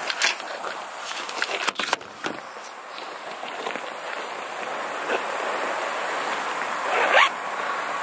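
Camouflage hunting clothes being put on: fabric rustling and a zipper being worked, with a couple of sharp knocks about two seconds in.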